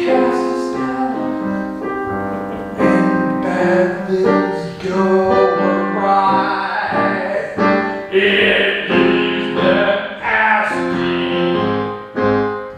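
A song in progress: piano accompaniment with a voice singing held notes.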